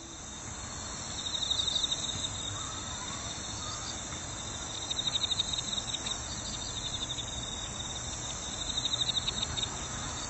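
Insects chirping in rapid pulsing trills, in three bursts, over a steady hiss of outdoor ambience.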